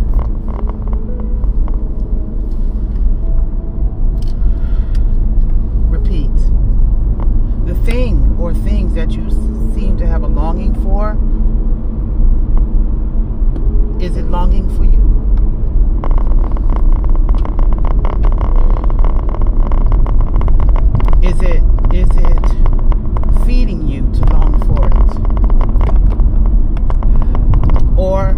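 A moving car heard from inside the cabin: a steady low rumble of engine and road noise, with a woman's voice talking at times over it.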